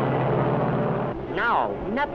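Cartoon sound effect of a four-engine bomber's propeller engines droning steadily, cutting off about a second in. Then comes a short muffled vocal cry that rises and falls in pitch.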